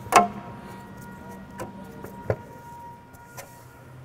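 Engine-cooling fan and fan clutch being spun by hand onto the threaded hub at the front of the engine. A few light metal clicks and knocks come over a faint steady hum, and the loudest click is right at the start.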